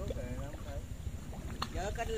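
Wind rumbling on the microphone, with faint, distant voices talking briefly at the start and again near the end.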